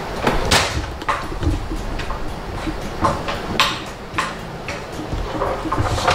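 A wooden pull-out tray in a display cabinet being slid open, with several sharp knocks and clicks of wood on wood spread through.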